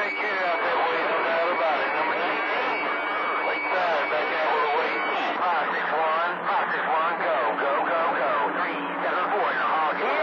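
CB radio receiver on channel 28 picking up long-distance skip: voices over static, hard to make out, from distant stations. A thin steady whistle from a carrier sits over them for the first half.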